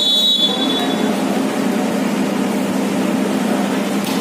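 Referee's whistle blown once, a single high steady blast of about a second, signalling the serve in a volleyball rally, over steady background noise from the court and spectators.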